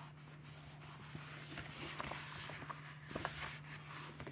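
Faint rustling and light ticks of hands handling the paper pages of a sticker book, over a low steady hum.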